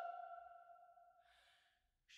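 A held soprano note ends and its sound dies away within about half a second, leaving near silence. A faint intake of breath by the singer comes near the end.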